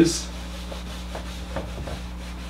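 Whiteboard eraser rubbing across a whiteboard, wiping off a marker drawing in a few faint strokes.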